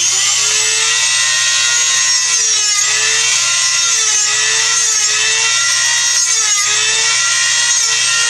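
Handheld high-speed rotary tool running with a steady whine, its pitch dipping briefly several times as it bites into a fitting on the PEX line, cutting to weaken the stubborn fitting so it can be taken off.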